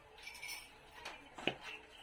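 Faint kitchen sounds with a single light clink about one and a half seconds in, as cookware is handled beside a stainless-steel frying pan.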